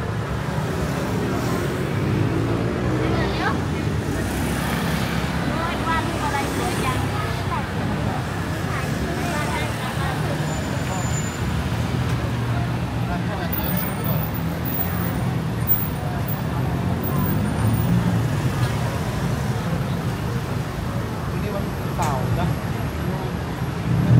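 Busy city street traffic: a steady rumble of cars and motorbikes passing on the road, with scattered voices of passers-by.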